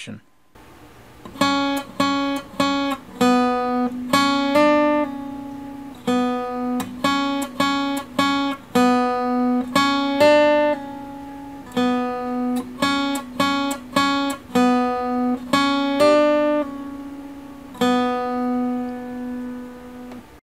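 Acoustic guitar playing a short single-string melody on the B string: repeated picked notes and an open-string note, then a hammer-on up one fret and a pull-off back down, sounding three notes from a single pick. The phrase is played several times over and ends on a held ringing note.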